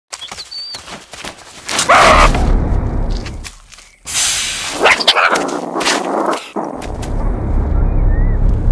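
A meerkat's bark-like calls, with a loud hiss from a cobra starting suddenly about four seconds in, over a low rumble.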